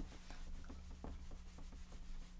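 Eraser rubbing across a whiteboard, wiping off marker notes in quick, faint strokes.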